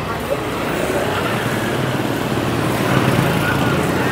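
Steady street traffic noise from motorbikes and scooters running along a busy city street, a dense even rumble that swells slightly over the seconds.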